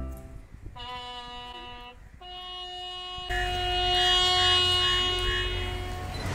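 A bugle sounding a slow ceremonial call of long held notes: a lower note about a second in, then a higher note that swells louder and is held for about two seconds.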